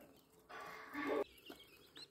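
Faint peeping of newly hatched quail chicks, with a short, louder low sound about a second in.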